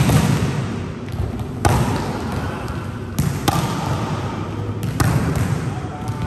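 Volleyballs being spiked and slapping onto the court: five sharp slaps, roughly every second and a half, two of them close together midway. Each ends in a long echo in the large sports hall.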